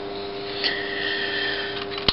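Flyback transformer high-voltage circuit humming steadily. About half a second in, a higher-pitched buzz joins with a click and lasts just over a second.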